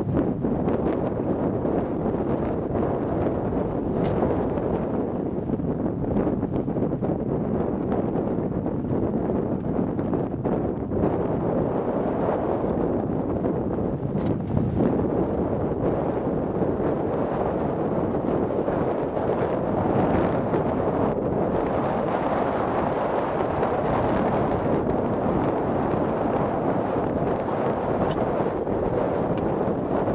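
Strong wind blowing across the microphone, a steady rushing noise, with a few faint knocks.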